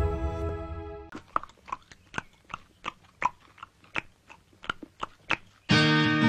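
A person crunching snack chips: a string of sharp, irregular crunches, about three a second. Music fades out at the start and a strummed guitar tune comes in loudly near the end.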